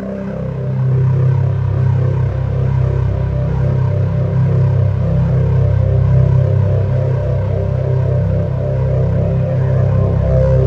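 Ambient synthesizer music: a low sustained drone with higher held tones above it, swelling louder over the first second and then holding steady.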